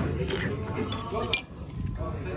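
A single sharp clink of a metal spoon against a ceramic soup bowl a little over a second in, with background voices underneath.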